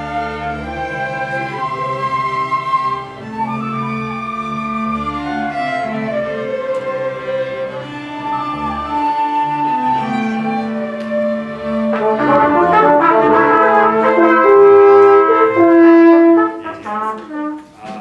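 A rehearsing ensemble of brass and woodwinds playing a sustained, chordal passage under a conductor, swelling louder about twelve seconds in and then breaking off a little before the end.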